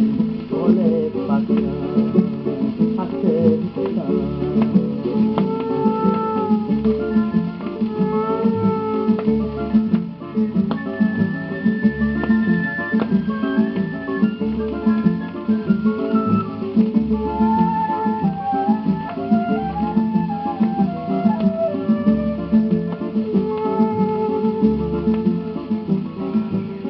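An instrumental interlude from a 1942 78 rpm shellac record: plucked and strummed guitars, with a wavering flute-like melody above them and no singing. The sound has the narrow, dull top of an old recording.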